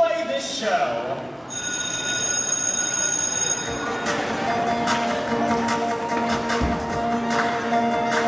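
A bell ringing steadily for about two seconds, then music starts playing.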